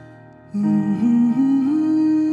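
Piano chord fading away, then about half a second in a male voice comes in humming a wordless phrase. The phrase climbs in three or four gliding steps and holds its top note over the piano.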